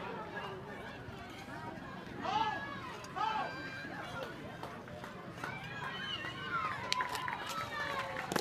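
Voices of spectators and players calling out and chattering across an outdoor ballfield, with a few short sharp clicks near the end.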